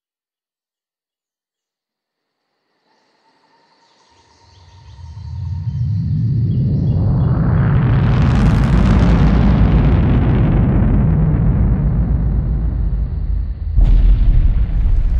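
A deep rumbling sound effect, like a fiery blast, swells out of silence about four seconds in. A rushing noise sweeps up and back down over it, peaking a little past the middle, and a sharper hit lands at the very end.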